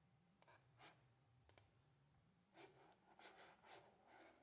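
Two faint, sharp computer mouse clicks about a second apart, then a few softer, fainter sounds near the end.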